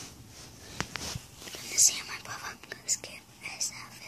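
A child whispering close to the microphone, breathy and unvoiced, with a few sharp hissing sounds in the middle and near the end.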